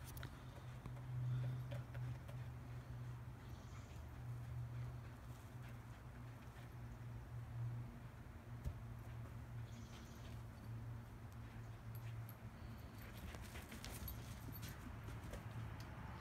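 Faint, scattered thuds and taps of a dog's paws and a rubber ball on grass and bark mulch, with a cluster of knocks near the end, over a steady low hum.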